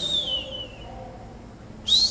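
A man whistling in imitation of a bird flying past: two descending whistles, one at the start and one near the end.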